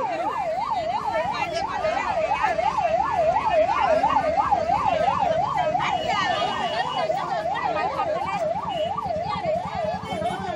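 Ambulance siren wailing in a fast, even up-and-down sweep, about three rises and falls a second, held steady throughout.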